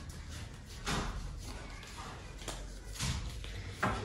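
A deck of Baralho Cigano (Gypsy oracle) cards being shuffled by hand, with a few soft, brief papery swishes of the cards.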